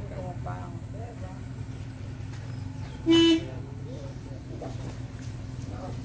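A vehicle horn gives one short toot about three seconds in, over a steady low hum.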